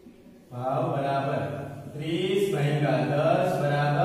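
A man's voice speaking in long, drawn-out phrases at a fairly level pitch, coming in suddenly about half a second in after near quiet.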